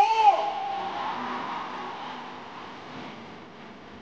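The end of a man's shout over a PA system, then the noise of a large crowd fading steadily away.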